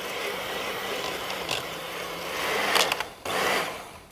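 Electric hand mixer running with its beaters in a stainless steel bowl, mixing a dough of egg and flour: a steady motor hum with a few light knocks, cutting off just before the end.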